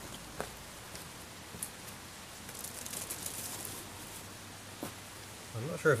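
Garden hose trigger nozzle spraying water into the coolant passages of a Reliant 850cc engine to flush them: a faint hiss that swells in the middle, with a few light clicks.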